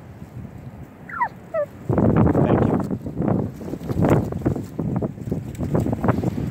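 A domestic tom turkey gobbling, as if in reply: a few short falling notes about a second in, then from about two seconds a loud, rough, rattling stretch.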